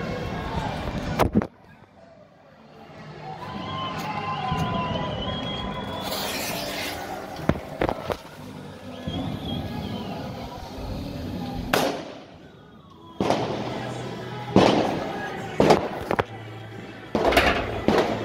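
Firecrackers going off: about eight sharp bangs scattered through, the first about a second in, one longer burst around six seconds in, and a quicker cluster in the last four seconds.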